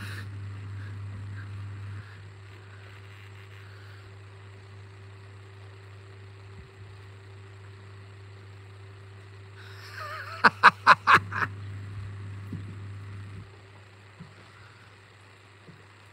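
A steady low motor-like hum with light background hiss. About ten seconds in comes a quick run of about six short, sharp sounds.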